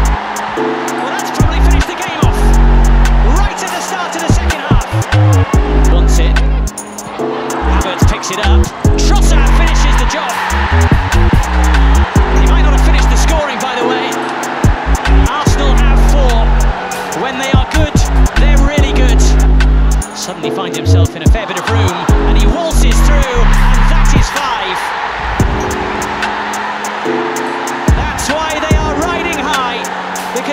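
Background music with a heavy, stepping bass line, laid over the steady noise of a football stadium crowd.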